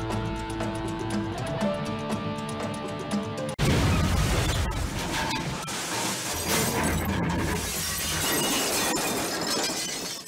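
Background music with held notes, then, about three and a half seconds in, a sudden loud crash sound effect with shattering glass that runs on for several seconds: a car crash.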